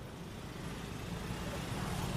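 Road traffic: a low, steady rumble of engines and tyres from the bus, scooter and motorcycle in the lane, growing slightly louder toward the end.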